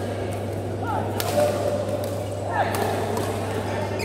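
Badminton rally: sharp racket hits on the shuttlecock, the loudest about a second and a half in and again about two and a half seconds in, with short shoe squeaks on the court floor, over a steady low hum and background chatter.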